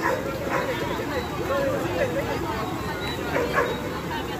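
Indistinct voices of several people talking, over a steady background rush of noise.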